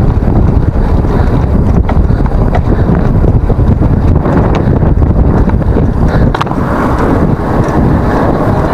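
Heavy wind buffeting on an action camera's microphone while riding a mountain bike, a loud, steady low rumble with a few sharp clicks.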